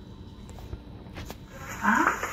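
Faint background noise with a few soft clicks, then near the end a child's low, moaning cry that rises in pitch and grows loud.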